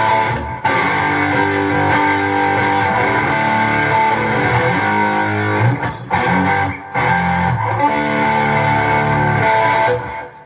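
Les Paul Junior-style kit electric guitar played through a computer, strumming sustained chords with a few short breaks, stopping near the end.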